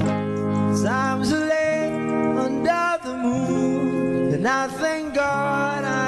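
Background music: a singing voice over steady, held instrument chords.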